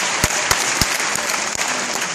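Congregation applauding in a large hall, with a few loud single claps close to the microphone.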